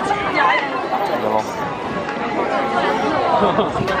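Many people talking at once in a dense crowd: overlapping chatter with no single voice standing out, and a laugh near the end.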